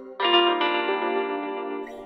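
Guitar melody from a trap instrumental, playing alone with no drums or bass: a chord comes in about a fifth of a second in, moves to a new note shortly after, and rings out, fading near the end.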